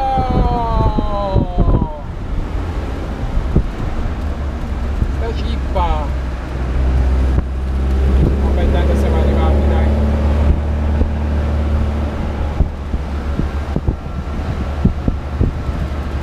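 Alfa Romeo Spider Duetto's 1600 twin-cam four-cylinder engine on the move, heard from the open cockpit. The revs fall away over the first two seconds, then the engine pulls steadily under load, with wind in the background.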